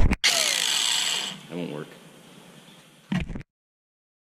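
Rustling and scraping of a handheld camera being moved and set down close to its microphone, loudest for about the first second, with a short murmur of voice near the middle. A brief bump comes just after three seconds, and then the sound cuts off abruptly.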